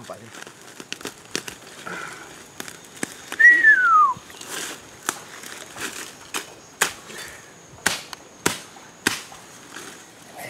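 Rustling leaves and irregular sharp snaps and cracks of stems and roots as a man pulls plants out of the forest floor by hand. A single clear whistle falls in pitch about three and a half seconds in and is the loudest sound. A faint, steady high hum starts about three seconds in.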